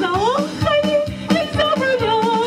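A woman singing into a handheld microphone over a backing track with a steady beat. Her voice slides upward at the start, then moves through shorter notes.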